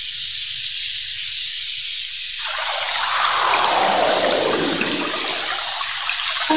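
A steady hiss, then from a little before halfway a louder rushing noise that falls in pitch over a couple of seconds, with no music or tones.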